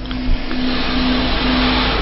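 A steady rushing hiss that grows brighter toward the end, over a low steady hum, cut off abruptly when speech resumes.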